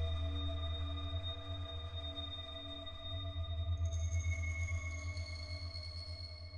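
Ambient electronic music from a Mutable Instruments modular synthesizer: a deep bass drone that flutters rapidly, under several steady, pure high tones. New, higher tones come in about four seconds in.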